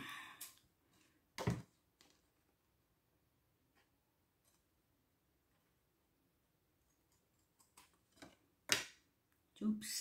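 Scissors cutting a strip of card: a few separate sharp snips and clicks, with a long quiet stretch in the middle and the loudest snip near the end. A knock from handling the card about a second and a half in.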